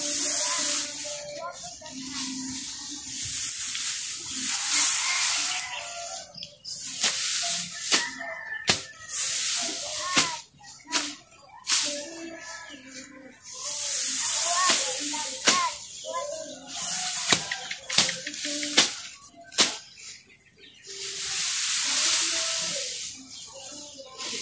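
Dry cut grass rustling and crackling in swells as armfuls are gathered and piled by hand, with background music.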